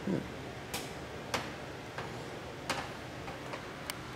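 A few scattered sharp clicks, about four in all and spaced irregularly, over a steady background hiss, with a brief low voice sound at the very start.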